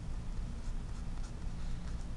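Marker pen writing on a sheet of paper, faint strokes as a word is written out.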